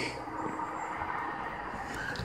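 Faint, steady outdoor background noise: a low rumble and hiss with no distinct event.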